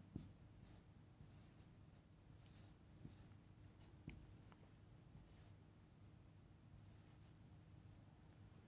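Whiteboard marker writing on a whiteboard: about a dozen short, faint scratchy strokes at an irregular pace as letters and symbols are drawn.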